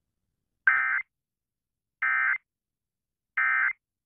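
Emergency Alert System end-of-message data tones: three short, identical bursts of screechy digital data about a second apart, signalling the end of the alert.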